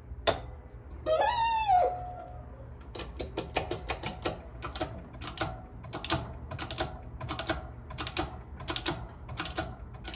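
A loud metallic squeal with a wavering pitch about a second in. Then a run of quick light clicks and taps, about three or four a second, as a copper coin ring is worked on a bench press and its ring-sizing tooling.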